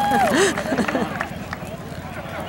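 Excited voices of a small group: a long held shout right at the start, then overlapping calls and chatter that fall quieter after about a second.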